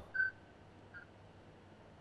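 A pause on a telephone call-in line: faint line hiss, broken by a short high beep about a fifth of a second in and a fainter, shorter one near one second.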